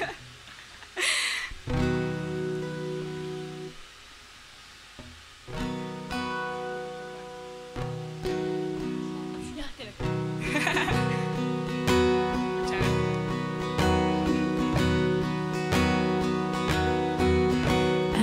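Acoustic guitar strummed in sustained chords as a song intro: a few ringing chords, a short pause, then the strumming resumes and settles into a steady pattern from about ten seconds in.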